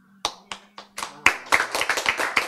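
Audience clapping: a few separate claps at first, then many hands joining in about a second in, thickening into a dense run of applause.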